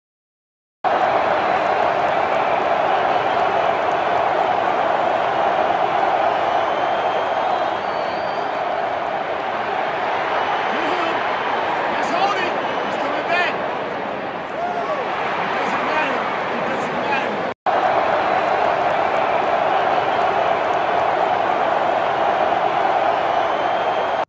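Loud, steady roar of a large football stadium crowd cheering, with a brief cut-out about 17 seconds in.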